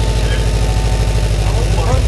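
A 2009 Subaru WRX's turbocharged 2.5-litre flat-four idles through its newly installed Invidia Q300 cat-back exhaust, seconds after start-up. The idle is loud, steady and low-pitched.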